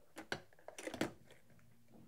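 A ceramic coffee cup and a glass carafe being set down: a few light clinks and knocks in quick succession within the first second, as the cup meets the counter and the carafe goes back onto the drip brewer's base.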